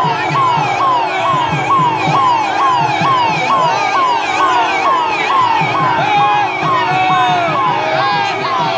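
An electronic siren sounding a fast, repeating falling yelp, about two and a half sweeps a second, with low rhythmic thuds underneath.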